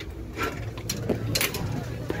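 Glass entrance door with a metal frame being pulled open by its handle: the latch and frame clatter in a few sharp clicks about half a second apart, over a low murmur of voices.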